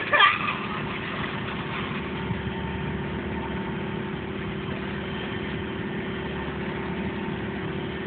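Sailboat's engine running with a steady, unchanging drone.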